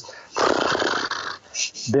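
A man's vocal imitation of a scuba diver's exhale bursting out of an open-circuit regulator as bubbles: a breathy, rushing hiss lasting about a second.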